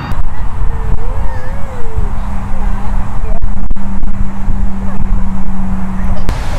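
Loud, low rumble of wind buffeting the microphone, with a wavering high vocal call about a second in and a steady low hum from about two seconds in.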